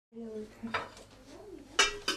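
Enamel kettle and its lid clinking as it is handled: a brief ringing clink at the start, a light knock, and a sharper metallic clink with a short ring near the end.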